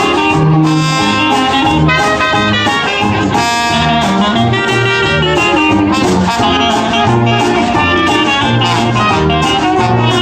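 A traditional New Orleans jazz band playing live: trumpet, clarinet and trombone weaving melody lines over a sousaphone bass line and strummed guitar.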